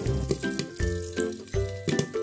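Background music over the scattered popping and sizzling of popcorn kernels in oil under a glass pan lid, near the end of the popping.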